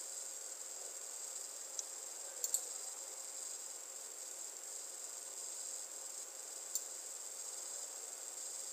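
Faint, steady high-pitched hiss of background noise, with a few light computer-mouse clicks: one about two seconds in, a quick pair a little later, and one near the end.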